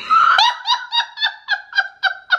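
A woman laughing: an opening burst, then a long run of short high-pitched ha's at about four a second.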